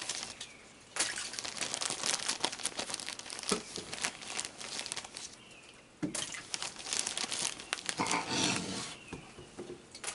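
Crinkly rustling of a plastic bag being handled while mini marshmallows are taken out and tossed into a water-filled kiddie pool. It comes in spells with short pauses between, and a louder burst of rustling comes near the end.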